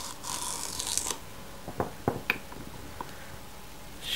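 Celery being worked into a julienne slicer's funnel: a scraping, crunching rustle lasting about a second, then several sharp clicks and knocks.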